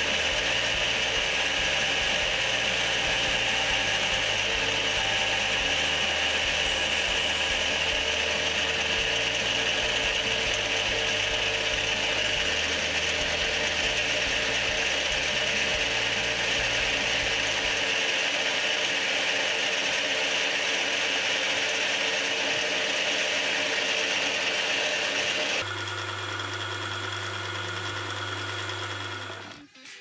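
Metal lathe running, a carbide-insert tool turning down a bolt: a steady high-pitched machining whine from the spindle and cut. About 26 s in the high whine stops, leaving a lower steady hum.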